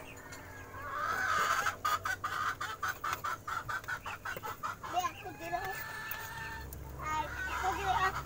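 Chickens clucking: a quick run of short clucks, then a few longer calls that bend in pitch.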